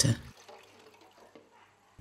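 Clean water poured from a plastic bowl into a large metal cooking pot holding resuscitation equipment parts, heard faintly and fading out about a second and a half in.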